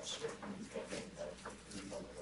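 Faint, indistinct murmur of voices in the room, with a few light clicks.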